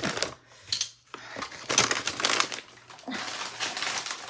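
Paper grab bag rustling and crinkling as it is handled and an item is put back into it, in a few loud spells, with a short sharp click about a second in.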